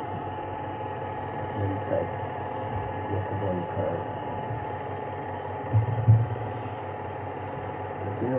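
Steady background hum and hiss of an old video recording, with faint voices and a brief low bump about six seconds in.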